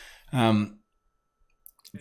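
A man's voice saying 'um', then a pause of near quiet broken by a few faint clicks just before speech starts again.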